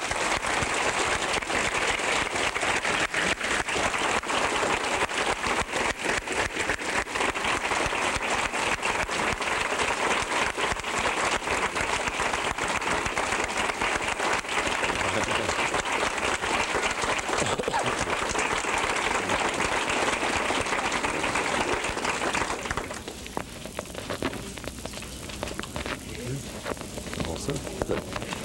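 A large audience applauding: dense, steady clapping that dies away about 23 seconds in.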